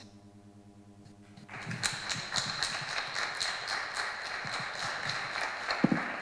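An audience applauding: a steady spread of many hand claps that starts about a second and a half in, after a brief quiet moment with a faint hum.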